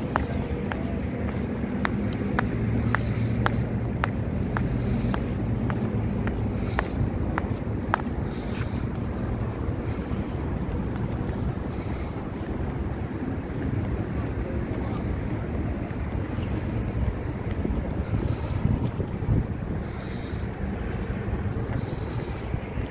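Wind buffeting the microphone outdoors: a steady, loud low rumble. A light click repeats about twice a second through the first third and then stops.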